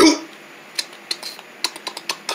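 Faint, irregular light clicks and taps from a paper cutout puppet being jiggled quickly by hand, coming closer together near the end.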